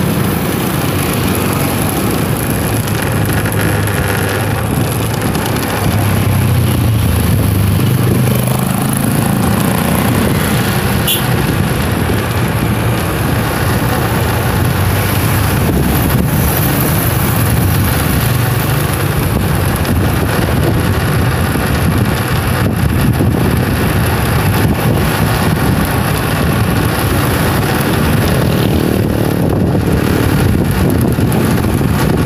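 Motorcycle engine running steadily as the bike rides along in traffic, with a constant loud rush of road noise. It gets a little louder about six seconds in.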